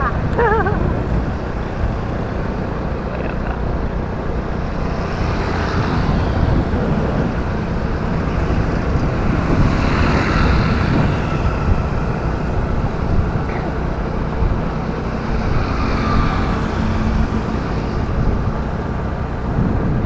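Steady road noise of a motorcycle ride: the bike's engine and wind rushing over the microphone, with swells as other motorbikes pass, one close by about halfway through.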